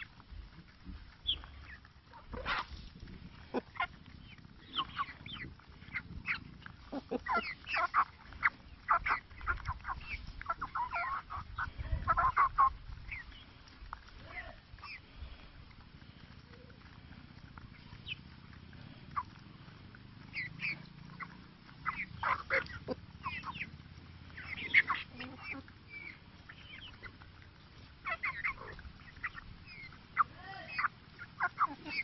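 Rhode Island Red hens clucking in short, scattered calls, with quick sharp pecks, as they eat feed from a hand.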